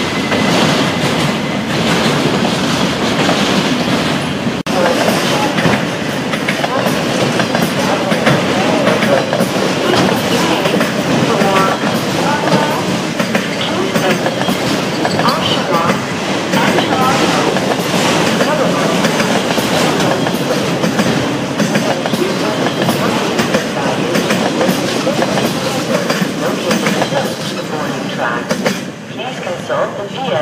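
Freight train of autorack cars rolling past close by, a steady loud rumble of steel wheels on rail with clickety-clack over the rail joints. It eases off near the end as the last car goes by.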